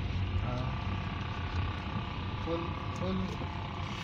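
A small car's engine and road noise, heard inside the cabin while it is being driven: a steady low rumble.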